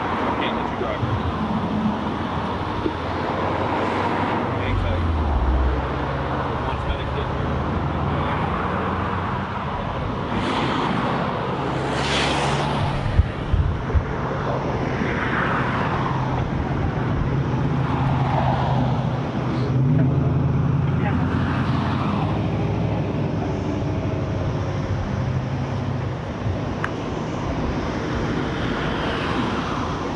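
Road traffic passing on a two-lane road: several vehicles go by one after another through the middle of the stretch, each rising and then falling away, over a steady low hum. Two sharp knocks come about halfway through.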